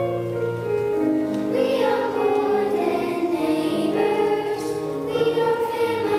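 Children's choir singing a song, accompanied on an electric keyboard.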